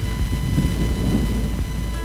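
Low, uneven rumble of outdoor background noise, with a faint steady high hum underneath.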